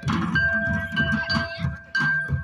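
A group of folk drummers beating barrel drums in a quick, steady rhythm, about four strokes a second, with a sustained metallic ringing over the beat.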